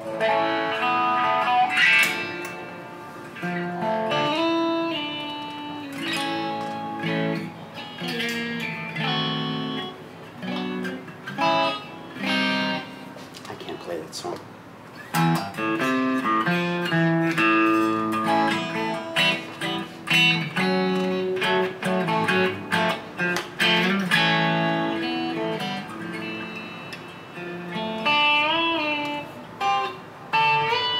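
Solo electric guitar playing a run of picked single notes and chords, with wavering vibrato on held notes near the end.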